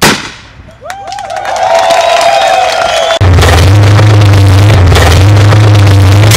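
An explosion goes off at the start and fades over about a second. From about three seconds in, a loud, steady low drone takes over.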